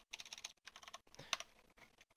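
Quiet clicking of computer keyboard keys: a quick run of taps, then a few scattered ones.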